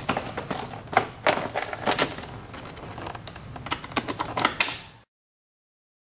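Rider's seat of a 2006 Yamaha R6 being set back onto the bike: a string of irregular plastic clicks and knocks as the seat pan is seated and pressed down onto its mounts. The sound cuts off suddenly about five seconds in.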